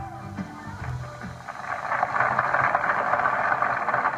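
A rock band's last bass and drum notes die away, then about a second and a half in, a studio audience breaks into applause that grows louder.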